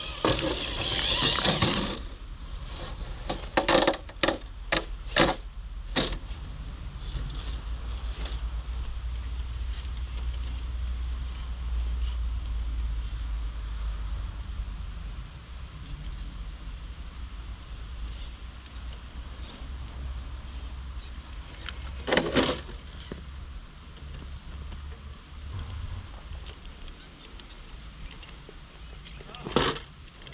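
Sharp knocks and clatters of a Traxxas TRX-4 RC rock crawler on the rocks as it climbs: a quick run of them a few seconds in and single ones later on, over a low steady rumble.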